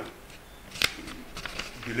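A single sharp click about a second in, in a lull between spoken phrases, with faint room noise around it.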